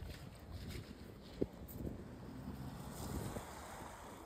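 Faint outdoor background noise: a low steady rumble with a light hiss, and one short click about a second and a half in.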